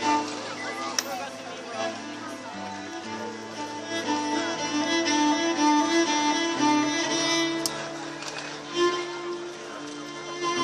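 Cello played with a bow: a melody of long held notes moving stepwise, over a lower line of sustained notes.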